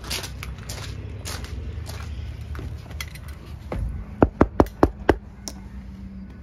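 Footsteps crunching on gravel, then a quick run of about five sharp knocks and clacks, roughly four a second, as the travel trailer's fold-out metal entry steps and door are used. A low steady hum comes in with the knocks.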